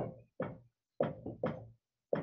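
Dry-erase marker writing on a whiteboard: a quick run of about six short taps and strokes of the tip against the board.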